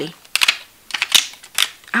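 Several short clicks and rustles of paper and plastic planner inserts being handled on a ring binder.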